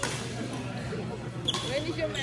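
A badminton racket strikes a shuttlecock once, a sharp crack about one and a half seconds in.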